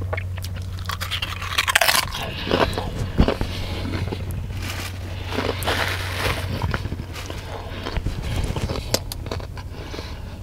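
Close-up eating sounds: crunching and chewing Doritos tortilla chips, then bites of a wrapped sub sandwich. The loudest crunches come about two seconds in and around six seconds in, over a low steady hum.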